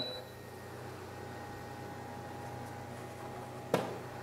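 Steady low hum with a few faint steady tones. Near the end comes a single sharp knock as the cut basswood sheet is lifted out of the laser cutter.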